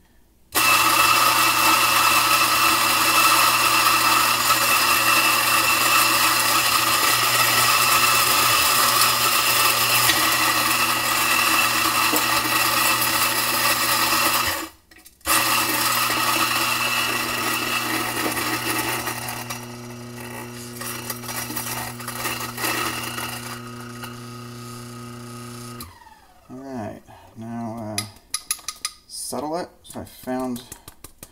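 Electric coffee burr grinder running steadily as it doses ground coffee into an espresso portafilter. It runs for about fourteen seconds, stops briefly, then runs again for about ten seconds, its sound thinning and lightening partway through. Near the end come a few light clicks and scrapes of handling.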